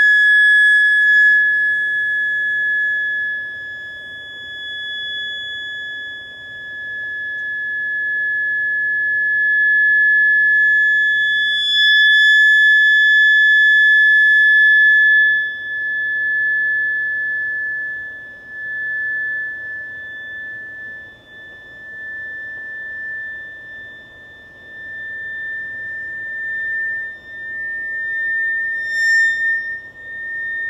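Electrodynamic shaker driving a thin magnesium plate with a sine sweep: one high steady tone, near 1440 to 1470 Hz, rising very slowly in pitch and swelling and fading in loudness as the plate passes through its resonances. A buzzy hiss joins the tone briefly at the start and again from about twelve to fifteen seconds in, the loudest stretch.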